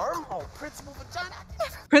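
Speech only: a cartoon character talking in the episode being played, at a fairly low level.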